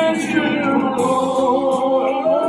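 A man singing one long, wavering held note that dips in pitch about halfway through.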